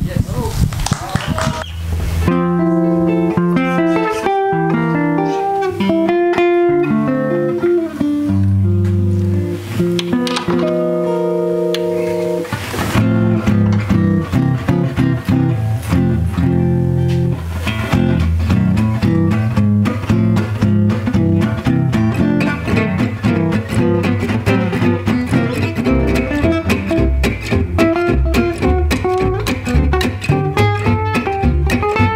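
Gypsy jazz (jazz manouche) trio of two acoustic guitars and a double bass playing. It opens with slow, held chords, then about 13 seconds in a steady strummed rhythm comes in under a lead-guitar melody; the lead guitar is distorted (saturated) in the recording.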